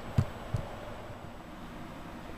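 Two short, soft knocks about a third of a second apart, then a steady low room hum.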